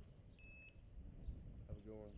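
One short electronic beep from a handheld ID card scanner, about a third of a second long, coming about half a second in. Near the end there is a brief snatch of a man's voice.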